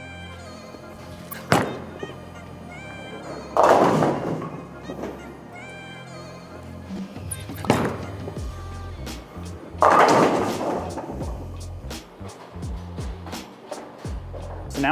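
Two bowling shots over background music: each time a thud as the ball lands on the lane, then about two seconds later the crash of the ball scattering the pins.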